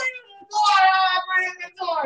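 A man's voice raised into a high, drawn-out whiny wail, mimicking a small child's tantrum crying, in a couple of stretched phrases starting about half a second in.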